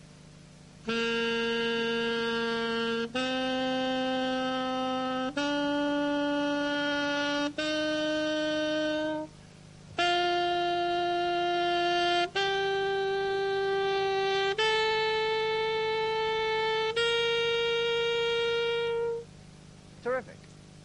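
Alto saxophone playing a G major scale slowly upward: eight held notes of about two seconds each, with a short breath after the fourth note (C) before the upper half, where the octave key comes in from D.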